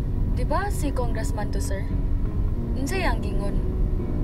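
Steady low rumble of a moving car's engine and road noise heard inside the cabin.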